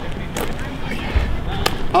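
Basketball thuds on an outdoor court: a dull bounce about a second in, then a sharper knock shortly after, under a faint voice.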